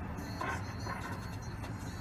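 Car engine idling, a steady low rumble heard from inside the car.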